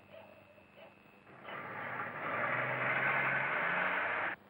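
A motor vehicle's engine, rising out of quiet about a second and a half in and growing louder, its low note stepping up slightly near the end.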